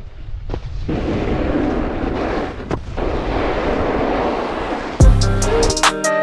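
Snowboard riding noise: wind rushing over the microphone with the board sliding on snow and a couple of short knocks. About five seconds in, music with a drum beat starts.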